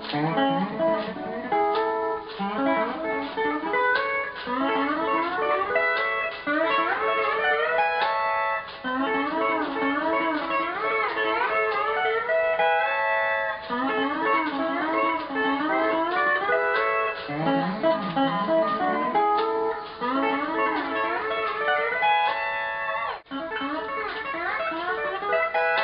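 Ten-string pedal steel guitar in E6/9 tuning played solo: a continuous run of picked notes and small chord shapes, with the steel bar gliding between pitches and shaken for vibrato.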